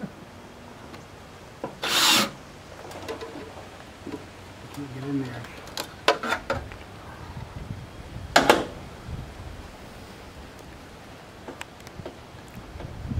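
Caulking gun being worked overhead to lay sealant on aluminum flashing: a quick run of sharp clicks from the gun, with short scraping and rubbing sounds from handling the gun and flashing, the loudest about two seconds in and again past eight seconds.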